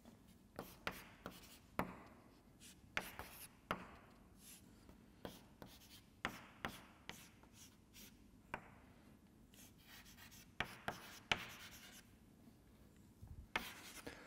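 Chalk on a blackboard: faint, irregular taps and short scratching strokes as lines and letters are drawn.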